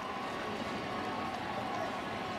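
Steady murmur of a ballpark crowd, an even background hum of many distant voices with no single loud event.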